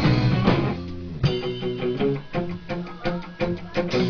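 Live rock band with electric guitars and drum kit. The full band playing drops out just under a second in, then after a hit the song goes into a sparser section of guitar notes punctuated by steady drum hits.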